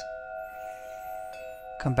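Soft background music of several sustained ringing tones held steady, with a faint high shimmer in the middle; a spoken word starts near the end.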